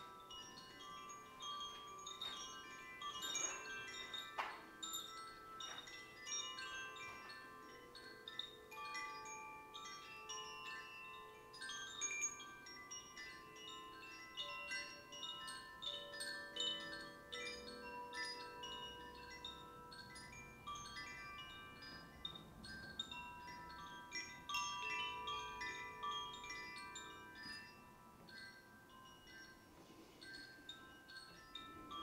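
A pair of hand-held cylindrical chimes hanging from cords, swung and shaken to give soft, overlapping bright ringing notes that start one after another without a steady beat.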